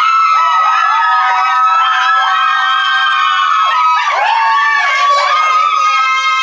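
A small group of women screaming and cheering together in long, high-pitched held shrieks, several voices overlapping.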